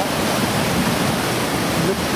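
Steady rushing of the Pistyll Rhaeadr waterfall: an even, unbroken wash of water noise.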